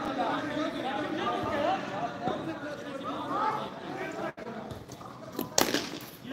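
Players' voices talking and calling across the ground, then near the end one sharp crack of a cricket bat striking the ball.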